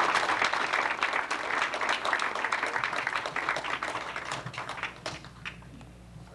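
Audience applauding in a small room. The applause is loudest at the start and dies away over about five seconds, ending in a few scattered claps.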